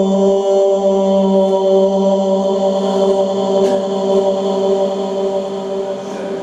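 A male qari's voice in melodic Quran recitation (tilawat), holding one long steady note through a microphone, easing off near the end.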